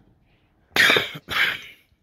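A man coughing twice in quick succession, loud and harsh.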